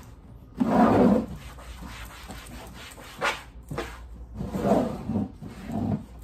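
Hand and cloth wiping a plastic trash can lid, with the lid shifting against a tile floor: a loud scuffing burst about a second in, then several shorter rubbing and scuffing sounds.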